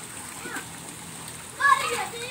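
Shallow, muddy stream water running steadily, with splashing as children wade and move about in it.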